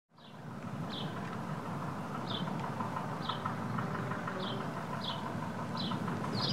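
A small bird chirping short, high, falling notes about once a second over a steady low background rumble of outdoor ambience, fading in at the start.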